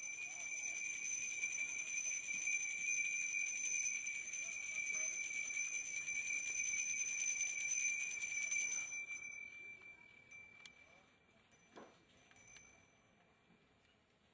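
Altar bells shaken in a steady, continuous ring for about nine seconds, then fading away, with a few faint single rings afterwards. They mark the elevation of the chalice at the consecration of the Mass.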